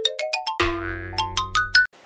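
Short cartoonish music sting: a quick run of short plucked notes climbing step by step in pitch over a held low note, cutting off suddenly near the end.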